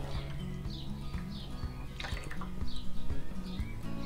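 Background music, with liquid glugging from a glass bottle as a thin beer and barbecue-sauce mixture is poured into a metal tray of sauce.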